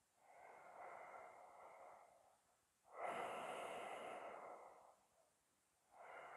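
A person breathing audibly in slow, long breaths. A softer breath fills the first two seconds, and a stronger one starts sharply about three seconds in and lasts about two seconds.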